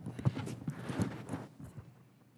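A quick run of about a dozen soft knocks and bumps in under two seconds, a desk microphone and papers being handled at a hearing-room table, dying away near the end.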